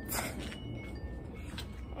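Wind chimes ringing softly, single clear notes at different pitches every half second or so, over a steady low background rumble. There is a short rustling burst near the start.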